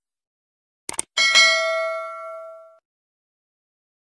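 Subscribe-animation sound effects: a quick double mouse click about a second in, followed at once by a bright bell ding that rings out and fades over about a second and a half.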